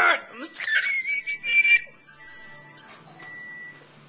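A young woman's excited high-pitched squeal, held for about a second and a half and rising near the end, followed by a quiet stretch with only a faint hum and a thin faint tone.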